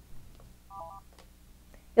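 Polycom VVX 300 desk phone giving a brief, quiet keypad-style beep pattern about three-quarters of a second in, while keys 1, 5 and 3 are held down; it is the tone that signals the phone has entered its reset-to-factory menu.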